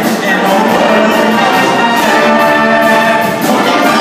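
Live band with brass horns playing over a steady drum beat.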